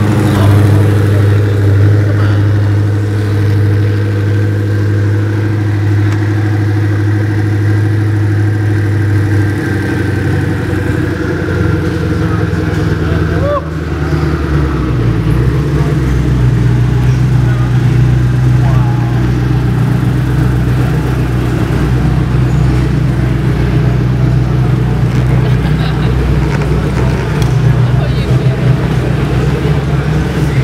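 Koenigsegg One:1's twin-turbo 5.0-litre V8 idling with a steady deep note. About fourteen seconds in the sound dips briefly and the idle settles at a slightly higher pitch as the car moves off at walking pace.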